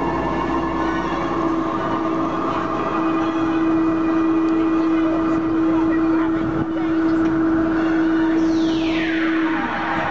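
Drop tower's lift drive humming on one steady pitch as the rider gondola climbs the tower, cutting out just before the end as it reaches the top. Near the end, a high whistle falls steeply in pitch.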